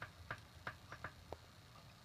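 Faint, irregular clicks and ticks, about six in two seconds, from a sneaker being handled and turned in the hand, over a low room hum.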